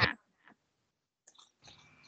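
Near silence on a video-call line after a spoken word ends, broken only by a few faint soft clicks.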